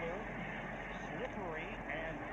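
Faint TV football broadcast audio: a play-by-play commentator talking quietly over a steady background of game noise.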